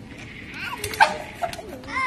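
Children's voices from onlookers, with a sharp knock about halfway through and a lighter one shortly after.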